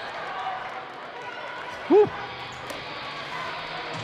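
Steady murmur of a gymnasium crowd during a stoppage, with one short, loud "woo!" about two seconds in.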